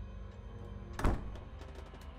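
A wooden door shutting with a single thud about halfway through, over quiet low background music.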